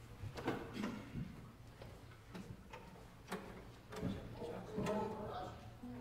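Stage changeover between pieces: scattered clicks and knocks of instruments, stands and feet being moved, with faint murmured voices over a steady low hum in a large hall. A brief low held note sounds near the end.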